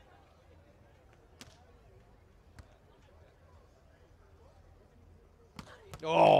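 Near silence: quiet arena ambience with a low hum and a couple of faint clicks, then a sharper knock shortly before the end.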